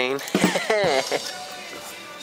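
A short wordless vocal exclamation with a sliding pitch in the first second, over background music; the music carries on alone for the second half.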